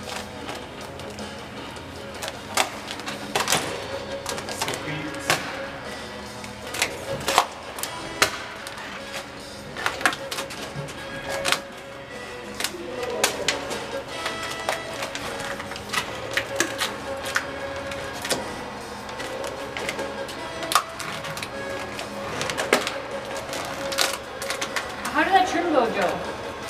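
Background music and low talk over scattered sharp clicks and crackles from vinyl wrap film being worked onto the truck canopy by hand.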